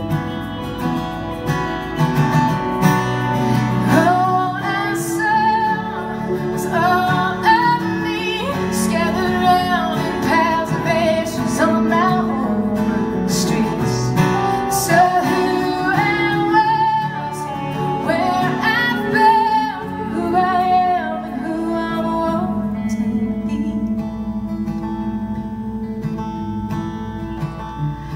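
Live band playing a folk-rock song: strummed acoustic guitar and electric guitar under a lead melody of bending, wavering notes through the middle, easing off near the end.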